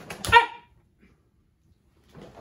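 A woman's short, sharp kiai shout, 'hey!', let out on a stepping lunge punch in karate one-step sparring.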